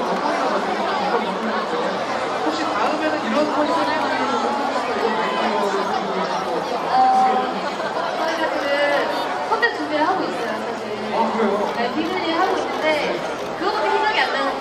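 Chatter of many voices talking at once, steady throughout, with no single voice standing out.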